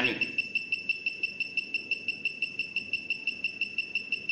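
A high-pitched tone pulsing rapidly and evenly, about six or seven short pulses a second, steady in pitch.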